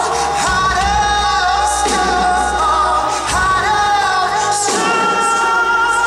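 A man singing a pop song live into a handheld microphone over a band, with drums and long held accompanying notes.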